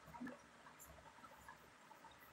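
Near silence: faint room tone with a few soft, small clicks.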